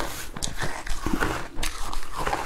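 Close-miked crunching of crushed ice being bitten and chewed, a run of irregular crisp crunches.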